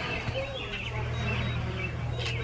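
Outdoor background with a steady low hum and faint high chirps.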